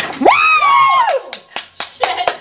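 A woman's loud high-pitched shriek, about a second long, rising, holding and then falling, as champagne gushes out of a just-opened bottle. It is followed by a few short, sharp claps or clicks.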